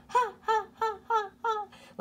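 A woman's voice imitating an echo, calling "ha" about six times in quick succession in a high voice, each call falling in pitch, like laughing.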